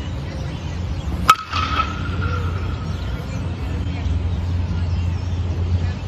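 A 2022 DeMarini ZOA two-piece composite USSSA bat strikes a pitched baseball about a second in. The hit is one sharp crack with a short high ringing ping that fades within about a second, over a steady low rumble.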